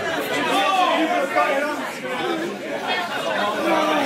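Voices talking and chattering, several people at once, with a large-hall echo.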